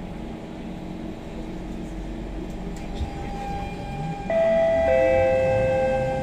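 SMRT C651 train's Siemens GTO-VVVF traction inverters whining as it pulls away from a stop. A low rumble gives way to steady tones that change in steps, getting suddenly louder a little over four seconds in and shifting again about half a second later.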